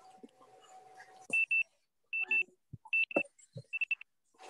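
Electronic beeping: high-pitched double beeps, four pairs in a steady pattern about 0.8 s apart.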